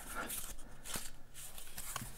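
Faint rustling and light scraping of a corrugated cardboard sheet being handled and turned over in the hands, with a few soft clicks.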